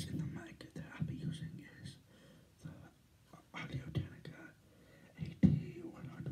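A man whispering and breathing close into a handheld microphone, in short irregular bursts with pauses, without clear words. There is a sharp, louder burst about five and a half seconds in.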